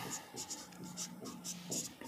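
A stylus writing on an interactive display screen: a quick series of short, light scratching strokes.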